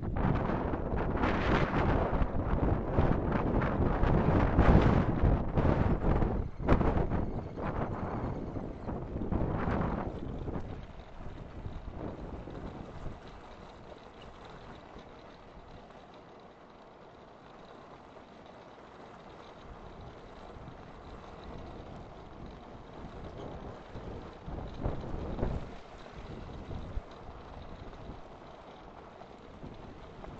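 Wind buffeting the camera microphone and wheels rumbling over loose slate gravel as a gravity-powered quarry kart rolls downhill. Loud for the first ten seconds, then much quieter for the rest, swelling briefly again about twenty-five seconds in.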